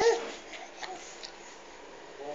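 A baby's brief high-pitched squeal at the very start, followed by a few faint small clicks.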